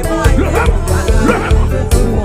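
Live gospel praise band playing with a steady drum-kit beat and bass guitar, and a voice sliding upward in pitch twice over the music.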